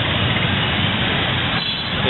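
Dense street traffic, mostly motorbikes and scooters, running as a steady wash of engine and road noise.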